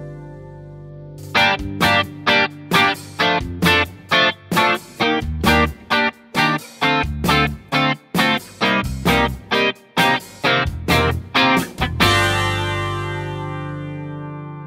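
Electric guitar (Fender Telecaster) through an Orange OR15 tube amp head, its volume knob rolled back a quarter so the amp plays clean. It plays short, choppy chord stabs about twice a second, then one final chord rings and fades near the end.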